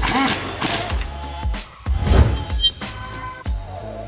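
Background music with a steady beat, over which a pneumatic impact wrench on a 17 mm socket runs in two short bursts, one in the first second and one at about two seconds.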